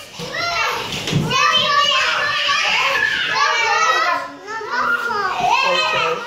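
Several young children shouting and babbling excitedly at play, their high voices overlapping.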